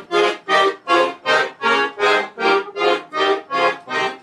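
Piano accordion playing a gaúcho-style instrumental intro of short, evenly spaced chords, about three a second.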